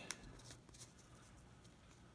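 Near silence: a few faint clicks and rustles from a clear plastic trading-card holder being handled in the first second, then quiet room tone.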